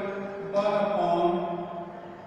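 A man's voice drawing out words slowly in a chant-like way, held tones stepping from one pitch to the next, fading near the end.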